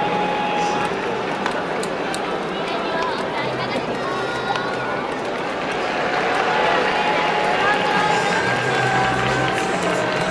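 Baseball stadium crowd ambience: many people talking at once, with music playing and holding steady notes in the second half, and a few sharp clicks early on.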